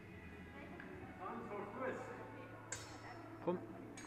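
Steel training longswords meeting once in a sharp metallic clink with a short ring, about two-thirds of the way through, followed shortly after by a second, duller knock. Faint voices sound in the background.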